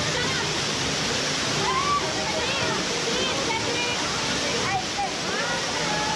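A waterfall's steady rush of water pouring over rock into a pool, with people's voices calling out now and then over it.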